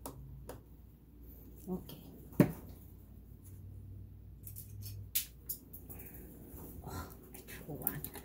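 Small clicks and taps of a screwdriver and plastic cover parts being handled while screwing a panel back onto a Janome MC10000 embroidery machine, with one sharp knock about two and a half seconds in.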